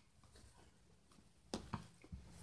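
Near silence: room tone, broken about one and a half seconds in by two short, faint knocks a quarter of a second apart, from a reborn doll and its clothes being handled.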